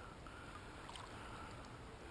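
Faint, steady sound of shallow creek water flowing over rocks, with a couple of small ticks.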